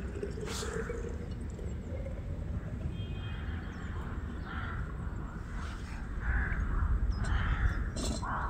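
Crows cawing several times, over the sound of hot water being poured from a camping pot into a vacuum flask. A low rumble grows louder near the end.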